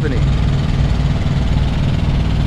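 Semi truck's diesel engine idling with a steady low rumble.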